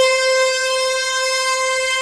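A sampled instrument note played an octave above its root in Native Instruments Kontakt, pitch-shifted through the Time Machine 2 time-stretch mode. It is one steady held tone with many overtones.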